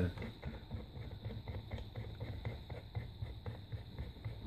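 Metal vape atomizer being screwed by hand onto a 510 threaded connector, with faint, irregular small clicks and scrapes of the threads and fittings.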